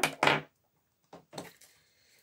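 An oracle card deck being handled and picked up: a sharp knock, then a few faint short taps and slides of cards about a second and a half in.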